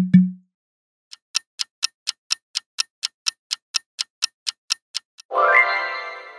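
Clock-ticking countdown sound effect, about four sharp ticks a second, ending in a bright ringing chime that sweeps quickly up and fades out. A short low thump opens it.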